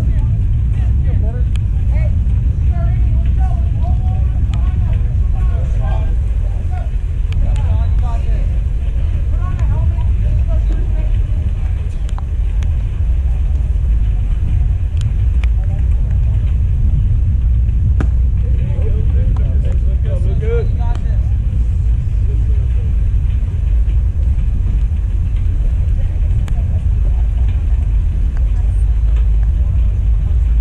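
Steady low rumble of wind buffeting the microphone, with faint voices calling from the field at times and a few short, sharp clicks.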